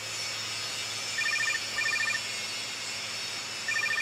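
Mobile phone ringing: a trilled electronic ringtone, two quick trills about a second in and another starting near the end, over a steady low hum.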